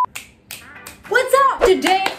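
A quick run of sharp finger snaps in the first second, followed by a woman's voice from about a second in.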